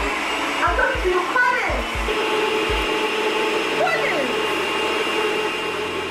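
Electric countertop blender running steadily.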